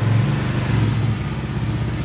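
A 2018 Honda Beat scooter's 110 cc single-cylinder engine easing off a light rev and settling to a steady idle about a second in.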